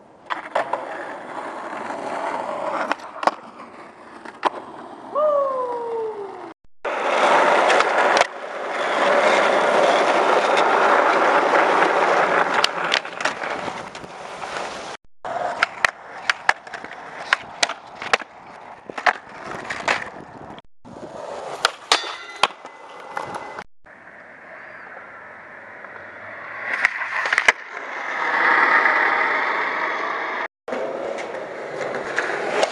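Skateboard wheels rolling over asphalt and concrete, with sharp clicks and knocks from the board, heard across several short clips with abrupt cuts. The rolling grows loudest for several seconds in the middle. A short falling tone comes about five seconds in.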